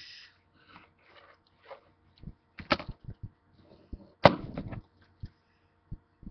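Handling noise on the camera: scattered taps and rustles, with a sharp knock a little under three seconds in and a louder knock just past four seconds, followed by a brief rustle.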